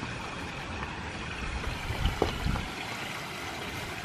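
Steady rush of trickling water from a backyard pond, with a few soft low thumps about two seconds in.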